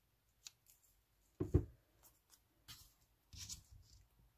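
Large scissors snipping through thin cardstock in a few short cuts, trimming a piece flush along its edge, with a pair of dull knocks on the table about a second and a half in, the loudest sounds here.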